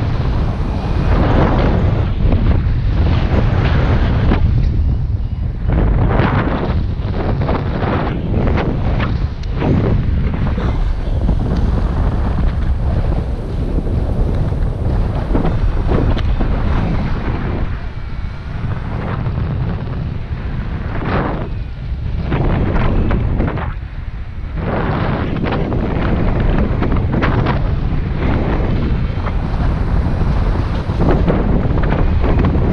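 Wind rushing over an action camera's microphone in paraglider flight: a loud low rumble that rises and falls with the gusts, with a few lighter lulls.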